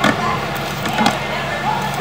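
Faint, indistinct voices over a steady low hum, with a click at the very start.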